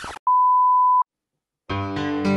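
A short burst of television static, then a steady single-pitch television test-card line-up tone lasting under a second that starts and cuts off abruptly. After a brief silence, synthesizer keyboard music begins near the end.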